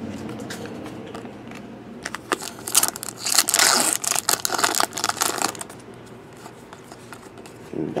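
Foil trading-card pack wrapper crinkling as it is handled, loudest from about two to five and a half seconds in, then settling to lighter rustling.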